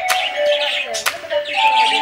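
A flock of budgerigars chirping and warbling in an aviary, with background music playing over them.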